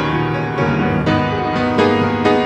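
Piano playing an instrumental passage of sustained chords, with new chords struck about every half second.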